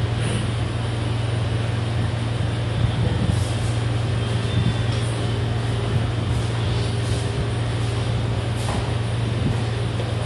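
Steady low hum over a constant background noise, with a faint click near the end as a wooden chess piece is set down on the board.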